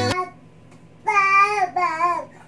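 A one-year-old baby singing out loud: one long, slightly wavering high note about a second in, then a shorter note that falls away near the end. The last of a music track cuts off just at the start.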